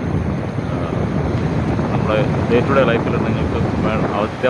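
Wind rumbling steadily on the microphone of a camera riding on a moving road bicycle.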